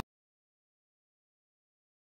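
Complete silence: the sound track drops out entirely, with no road or engine noise.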